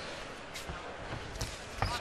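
Arena crowd noise under a few dull thuds from the kickboxing ring, the loudest just before the end.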